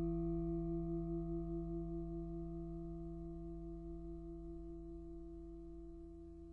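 Gamelan metal instruments ringing on and fading out at the close of a piece. Several tones are held together, and one of them wavers in a quick pulse that slows as the sound dies away.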